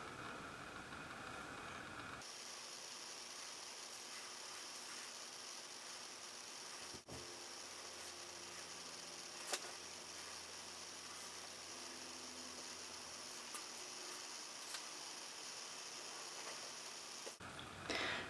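Faint, steady hiss of room tone and recording noise, with a single soft tick about nine and a half seconds in.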